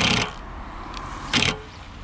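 Cordless Makita impact driver hammering a self-drilling screw through timber into a steel gate post, running steadily and then stopping about a quarter second in. A short second burst follows about a second later.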